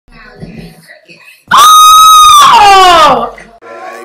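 A woman screams loudly and high, starting about one and a half seconds in: she holds one pitch for about a second, then slides down, and the scream ends about three seconds in.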